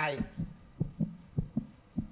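Heartbeat sound effect for suspense: a steady lub-dub double thump, about three beats in two seconds. A man's voice says a single word at the start.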